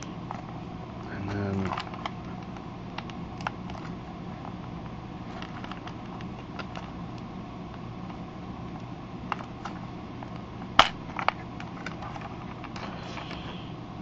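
Light plastic clicks and taps from a Galoob Action Fleet Millennium Falcon toy being handled, its small moving parts clicking, over a steady low hum. The loudest is a sharp double click about eleven seconds in.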